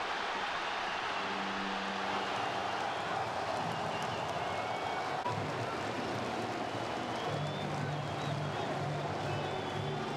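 Stadium crowd noise just after a home goal: a steady roar from the stands, with fans singing long held notes that shift pitch in steps.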